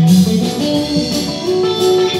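Telecaster-style electric guitar playing an instrumental solo of picked single notes over band backing with a steady beat.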